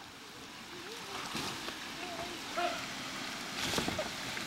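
Steady hiss of spraying water on an inflatable water slide, with distant children's voices and a sharp knock near the end.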